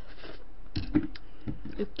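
Close-miked eating sounds: soft mouth and lip noises with a few small, separate clicks and soft knocks, as food is taken from chopsticks.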